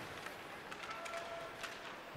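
Faint ice-hockey arena ambience: a steady crowd murmur with a few light clicks from sticks, puck and skates on the ice.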